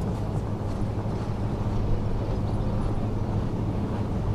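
Steady low hum and rumble with no distinct events.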